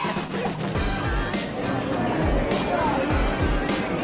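Background music with a steady beat, its low drum hits coming in about a second in at roughly two a second.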